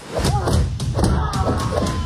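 Movie-trailer sound mix: a quick run of heavy thuds over music.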